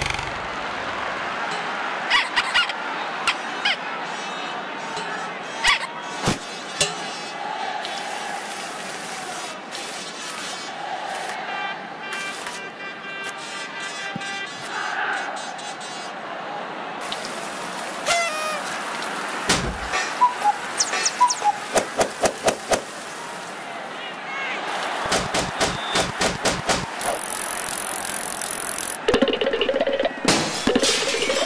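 Cartoon soundtrack of sound effects over a steady background noise with music: scattered sharp hits and thuds, and a quick run of about a dozen hits roughly two-thirds of the way through.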